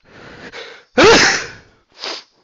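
A person sneezing: a breathy intake of breath, then one loud, sudden sneeze about a second in, with another short burst starting right at the end.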